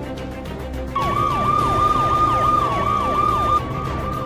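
A police siren with a fast yelp, its pitch dipping and snapping back about four or five times a second, starts suddenly about a second in over background music.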